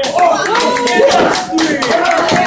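Audience clapping steadily, with several voices talking and calling out over the applause.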